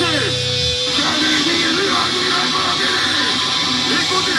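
Live hardcore band through a loud PA: a held, distorted guitar-and-bass chord cuts off abruptly under a second in, leaving ringing guitar noise and cymbal wash with the crowd shouting.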